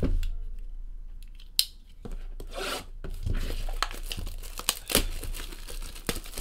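Clear plastic shrink wrap being torn and peeled off a sealed trading card box, crinkling and rustling. It is mostly quiet at first with a single click, and the crinkling starts about two seconds in.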